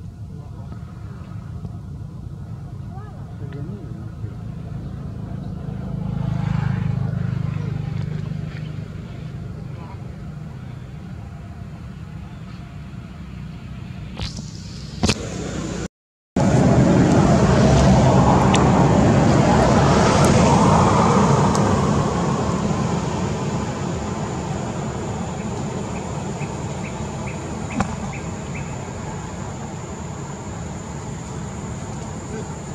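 Outdoor background with a steady low rumble and faint voices. The sound cuts out for a moment about halfway through and comes back louder and noisier for several seconds before settling back.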